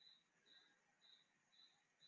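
Near silence: room tone, with a faint high-pitched chirp repeating evenly about twice a second.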